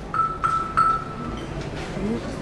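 A high, pitched metal percussion note struck three times in quick succession on the same pitch, the last strike ringing on briefly.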